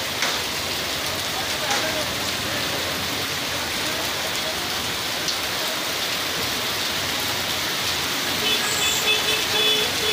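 Heavy rain pouring onto a flooded street, a steady hiss of drops splashing into standing water. Near the end a high beeping tone pulses several times.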